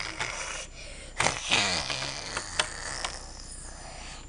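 A breathy sigh about a second in, its voice dropping in pitch, with a few light clicks of a plastic toy figure being handled on a plastic playset.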